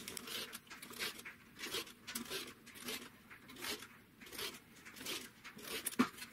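Rotary cutter blade slicing through stacked quilting fabric strips on a cutting mat, a run of short, faint cutting strokes about two a second, as the strip set is cut into two-inch segments.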